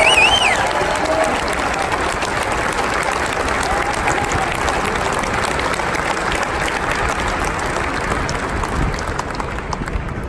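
A crowd applauding steadily, with a high warbling whistle from the crowd at the very start. The applause begins to thin near the end.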